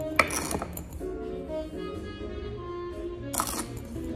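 Soft instrumental background music, with two short gritty clinks and rattles, just after the start and again about three and a half seconds in, as white sand from a plastic scoop hits a stemmed wine glass.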